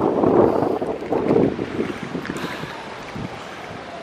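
Wind buffeting the camera microphone in uneven gusts, strongest in the first two seconds and easing off after that.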